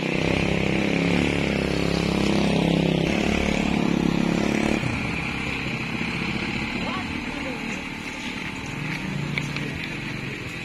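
A motorcycle engine running steadily for about the first five seconds, then cutting off abruptly. Voices and a steady high-pitched whine run under it throughout.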